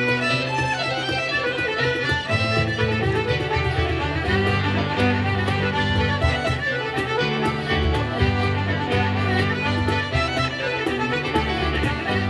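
Irish traditional band playing a lively instrumental tune, with the fiddle leading on quick bowed notes. A button accordion and a bass line sit underneath, and a cajón keeps a steady beat.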